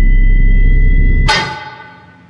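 A steady high-pitched ringing tone over a loud, muffled low rumble. This is a film sound effect of impaired hearing. About a second and a half in, both end abruptly on a sharp ringing hit that fades away.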